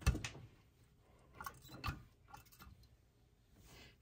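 Quiet handling sounds from pressing quilt seams with an iron beside wooden quilter's clappers: a sharp knock at the very start, another lighter knock about two seconds in, and faint rustling between.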